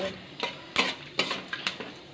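A spatula scraping and clicking against a metal kadai, about five short strokes, as whole spices (bay leaf, cloves, cardamom, cinnamon) are stirred in hot oil. A faint sizzle of the frying spices runs underneath.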